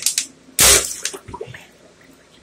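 An empty plastic water bottle jammed into a clogged sink drain is smacked by hand, forcing water down: one loud whooshing splash about half a second in. It is followed by a second or so of fading splashes as the drain clears.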